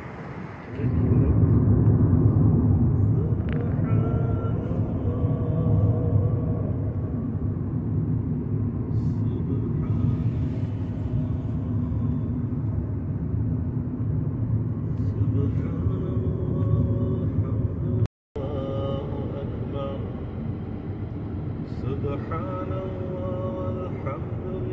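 Road noise inside a moving car's cabin: a steady low rumble of tyres and engine that starts about a second in and breaks off briefly once.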